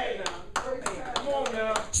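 Hand clapping in a steady rhythm, about three claps a second, with voices going on under it.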